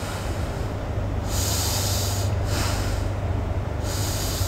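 A man taking slow, deep breaths while holding a seated yoga stretch: two long breaths, the first starting about a second in, with the next beginning at the end, over a steady low hum.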